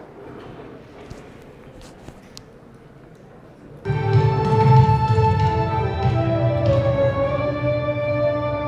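A few faint clicks over quiet room noise, then about halfway in, playback of an AI-generated MusicGen track starts suddenly and loud. The track was prompted as an 80s driving pop song with heavy drums and synth pads, and it plays as sustained synth-like tones over a heavy low end.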